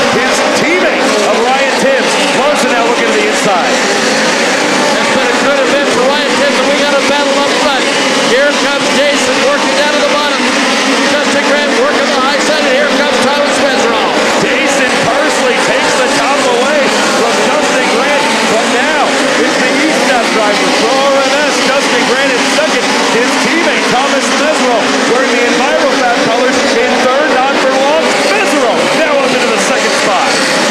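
A field of USAC midget race cars at racing speed on a dirt oval, many engines running at high revs at once, their pitches wavering up and down as the cars throttle through the turns and pass by.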